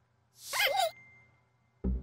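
Cartoon sound effects from an animated logo: a short breathy, voice-like sigh with a wavering pitch about half a second in, then a sudden low thump near the end.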